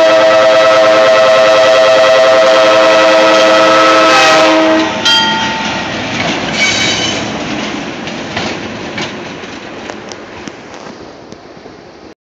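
Diesel locomotive air horn sounding one long, very loud blast for about the first five seconds as the engine reaches the grade crossing. After that the locomotive's engine rumble and its wheels clicking over the rail joints are heard as it passes, fading toward the end.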